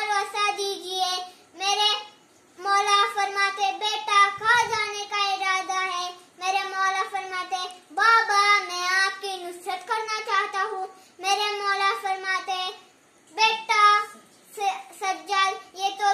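A young boy's voice reciting a Karbala lament in a melodic, sing-song chant, long held phrases broken by short pauses.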